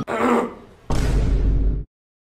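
A man clearing his throat twice, the second one longer and cut off suddenly.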